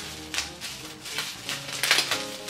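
Plastic bag and bubble wrap crinkling as a wrapped makeup item is pulled open by hand, in several short crackles with the loudest near the end, over soft background music.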